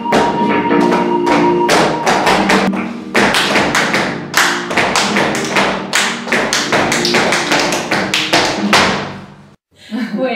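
Flamenco music with many sharp, rhythmic percussive strikes over it, fading out just before the end.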